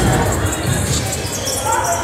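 Basketball dribbled on a hardwood gym floor, with the murmur of a crowd in a large, echoing gym.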